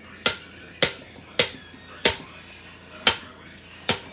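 Sharp knocks of a rock-hard, burnt pretzel being banged down on a paper plate, six in all at uneven intervals of about half a second to a second.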